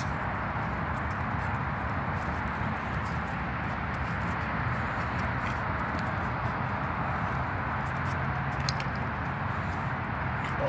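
A steady rushing background noise, with a few light taps and scuffs of footsteps and a small puppy's paws on a hard court surface.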